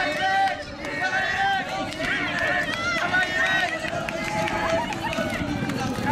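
A horse-race commentator calling the finish in Polish, speaking fast and excitedly without a break.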